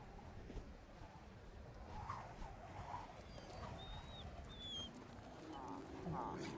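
Quiet wind rumble in a mountain snowstorm, with a few short, thin, high whistled bird calls, each dipping slightly in pitch, in the middle few seconds.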